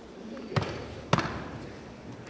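Two sharp thumps about half a second apart from a line of fraternity neophytes stepping, in a large gym.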